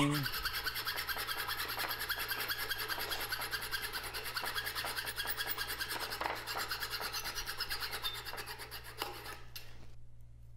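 Hand hacksaw cutting through the cast-aluminium tail housing of a Ford ZF5 transmission, sped up: rapid, even rasping strokes that stop shortly before the end.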